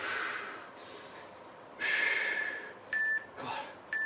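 A man's heavy, hissing exhales while he holds a strained V-sit, followed near the end by two short electronic beeps a second apart from an interval timer counting down the final seconds of the exercise.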